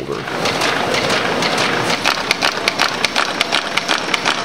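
MBO buckle-plate paper folding machine running: a steady mechanical noise with rapid, evenly spaced clicks as sheets are fed and folded.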